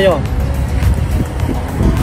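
Road traffic on the road nearby, a steady low rumble of passing vehicles.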